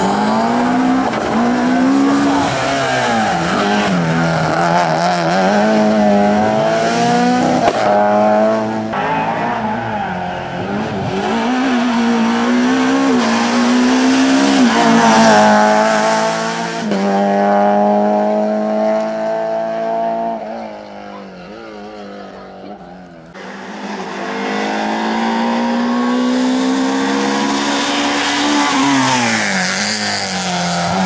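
Nissan Group A hill-climb car's engine at full throttle, revs climbing and dropping back with each gear change. About two-thirds of the way through, the note goes quieter for a couple of seconds, then climbs hard again.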